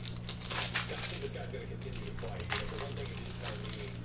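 Cellophane wrapper of a trading-card cello pack being torn open and crumpled by hand, in irregular crinkles and crackles, over a steady low hum.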